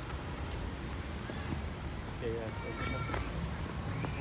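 A low, steady outdoor rumble from an open parking lot, with a voice saying "yeah" twice in the second half.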